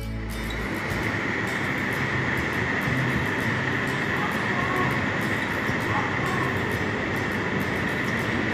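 Steady rushing of the indoor skydiving wind tunnel's vertical airflow, an even noise with a hissing edge, after background music cuts out in the first instant.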